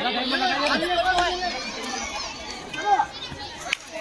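Many boys' voices shouting and talking over one another: players and student spectators calling out during a kabaddi raid. The voices thin out somewhat in the second half.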